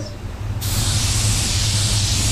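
Small touch-up automotive paint spray gun triggered about half a second in, giving a steady hiss of air and atomized paint as a shade is sprayed over a primer spot.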